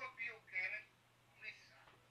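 Speech only: a voice talking in short phrases with pauses between them, somewhat thin in tone, as over a telephone line.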